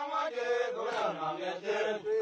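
Voices singing a chant-like song, with held notes that bend slowly in pitch.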